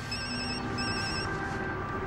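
Mobile phone ringing: a high electronic trill in two short bursts, each about half a second long.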